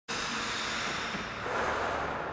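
Steady ice rink ambient noise, an even hiss-like haze with no music or speech.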